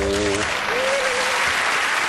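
Studio audience applauding at the end of the show, with the music stopping about half a second in and a single held, wavering voice note just after.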